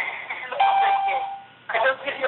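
Electronic chime over a telephone conference line, typical of the system tone played as a caller joins or is unmuted: a ringing note starting about half a second in, held for about a second and fading.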